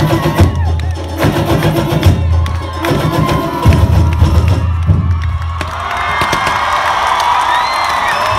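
A carnival samba drum section (batería) playing: heavy bass-drum strokes under sharp clicks and rattling percussion. The drumming stops about five and a half seconds in, and crowd cheering and shouting follow.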